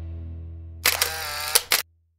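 Camera shutter sound effect: a sharp click, a brief whirring wind-on, and two quick clicks to finish, over the last fading note of background music.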